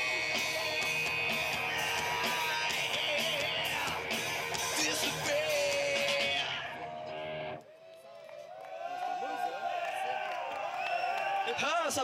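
Live amateur rock band playing with strummed electric guitar and drums, cutting off abruptly about two-thirds of the way through. It is followed by overlapping crowd voices, talking and calling out, that grow louder near the end.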